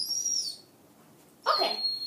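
Young puppy whining: a thin, high gliding whine at the start, then a louder whimper with falling pitch from about 1.5 s in.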